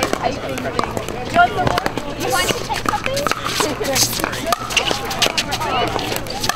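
Pickleball paddles striking the perforated plastic ball: sharp pocks at irregular intervals, under the chatter of players' voices.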